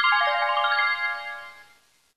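A short chime-like jingle: a quick run of bell-like notes falling in pitch, each note ringing on, the whole fading out within about two seconds. It is a transition sting marking the change to a new slide.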